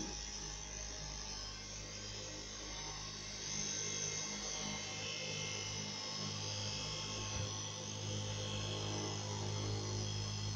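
Electric straight-knife cloth cutting machine running: a steady motor hum with the rasp of its blade cutting through a stack of fleece fabric, a little louder from about three and a half seconds in.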